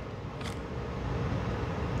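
Steady low background hum, with one brief soft swish about half a second in as the hands lay another tarot card into the spread.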